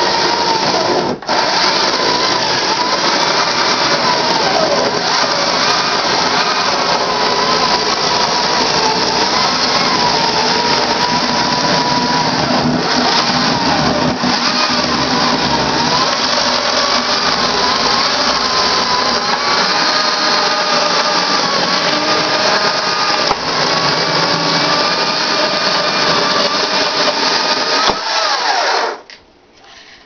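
Stihl battery chainsaw cutting firewood logs to length, its motor pitch wavering up and down as the chain bites and loads in the wood. It runs almost without a break, with one brief dip about a second in, and stops suddenly near the end.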